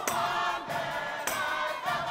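Congregation singing a gospel song together, several voices at once, with sharp percussive hits in the beat.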